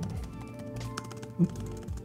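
Background music with a steady tone, with a few light clicks of computer keys in the first second as characters are deleted from a text field.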